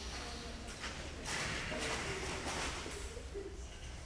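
Faint, indistinct voices in a large hall, with a soft hiss in the middle.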